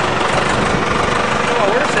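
Oldsmobile's engine idling steadily, heard from underneath the car.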